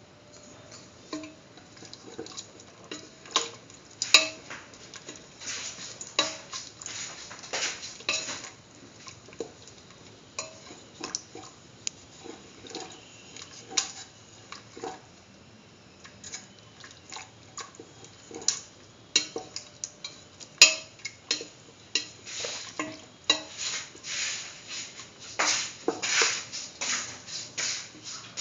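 A spatula scraping and clinking against the bottom and sides of a stainless steel pressure cooker pot as a thin coconut-milk mixture is stirred. The strokes are irregular and come thickest near the end.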